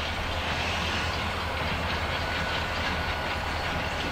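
An approaching EMD SD40-2 diesel-electric locomotive, its 16-cylinder two-stroke diesel heard as a steady, distant rumble.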